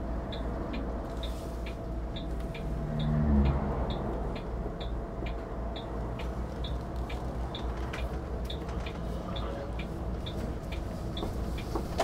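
Cab interior of a diesel-pusher Class A motorhome on the move: a steady low engine and road rumble, swelling briefly about three seconds in. Over it, the turn-signal indicator ticks about twice a second as the motorhome sets up for a turn.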